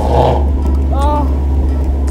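Car engine running at low speed, heard inside the cabin as a steady low rumble. A short voice sound comes about a second in.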